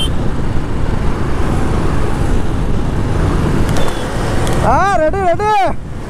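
Riding noise from a moving Royal Enfield Classic 350 motorcycle: wind rushing over the microphone over the low running of its single-cylinder engine and the tyres on the road. A man's voice calls out briefly near the end.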